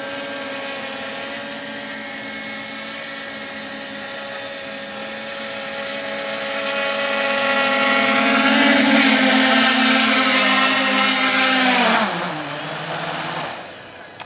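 Quadcopter's SunnySky brushless motors and propellers whining at a steady pitch as it comes in to land, growing louder as it nears; about twelve seconds in the pitch slides down as the throttle comes off at touchdown, and the motors stop just before the end.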